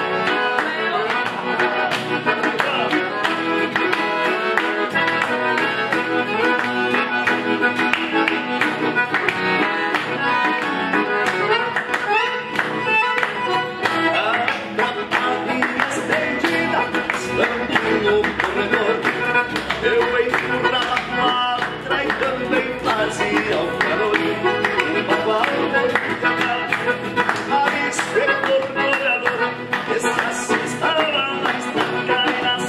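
Instrumental passage of gaúcho music on a piano accordion with acoustic guitar, hand clapping keeping the beat.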